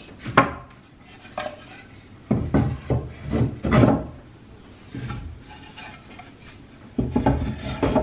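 Wooden shelf boards set down on the wooden arms of a tray display stand and slid into place: a string of wood-on-wood knocks with scraping rubs between them, the loudest knocks near the middle and near the end.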